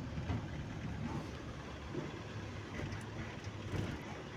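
Car driving along the road, heard from inside the cabin: a steady low rumble of engine and tyre noise.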